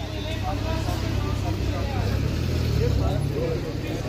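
A motor vehicle's engine running close by, with a steady low rumble that is loudest about two to three seconds in, among the talk of people on the street.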